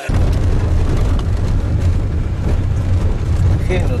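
Steady low rumble of a car driving along a road, heard from inside the cabin; it starts suddenly.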